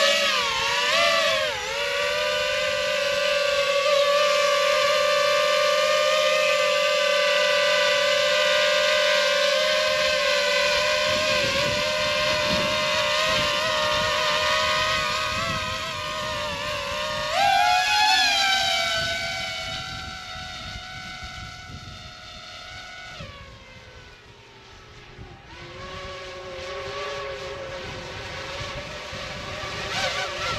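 DJI FPV drone on Master Airscrew Ludicrous propellers, its motors giving a loud, high-pitched whine as it lifts off and flies away down the field. The pitch holds steady, jumps up briefly a little past halfway, then drops lower and fainter as the drone comes down in altitude.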